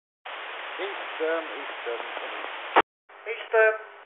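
Marine VHF radio traffic between a ship's pilot and canal control, heard through a receiver: a burst of static hiss carrying a faint voice, cut off by the squelch with a click a little under three seconds in. A second short transmission with a clearer voice follows.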